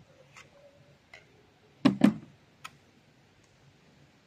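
Handling clicks and knocks from a Doom Armageddon crossbow as it is brought down onto its bipod on a folding table: a few light clicks and a loud double knock about two seconds in.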